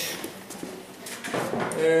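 A few faint knocks and rustles of objects being handled, then near the end a man's drawn-out, hesitant "eee".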